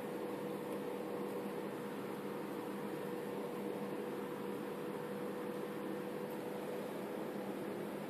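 Steady hum and hiss with a faint steady tone, from something mechanical or electrical running.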